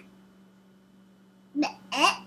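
A quiet room with a steady low hum, then two short bursts of a young child's voice near the end.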